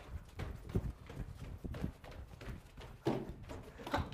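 Feet of two people jumping open and closed and running on a carpeted floor: a quick, irregular patter of soft thuds.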